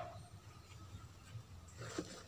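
Faint, soft rustling of loose potting soil as a gloved hand presses an onion bulb into a basket and lifts away near the end.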